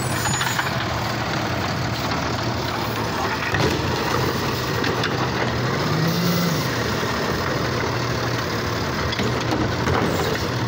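Automated side-loader garbage truck running at the curb, its diesel engine idling steadily. About six seconds in, as the hydraulic arm lifts a cart to dump it into the hopper, the engine briefly revs up and back down. There are a few sharp knocks from the cart and arm.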